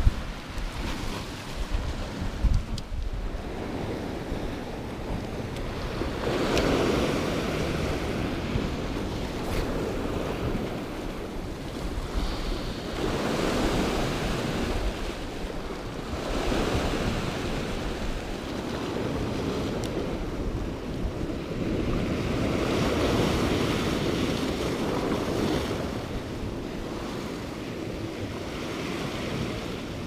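Sea waves washing against a rocky shoreline, swelling and fading in several long surges.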